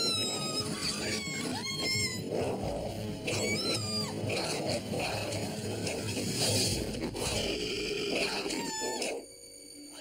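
High-pitched creature squeals, several short calls that bend up and down, over dense background music; a TV-show sound effect for a hatching alien. The sound drops away about nine seconds in.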